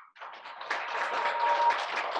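Applause: many hands clapping. It starts abruptly just after silence and swells within the first second.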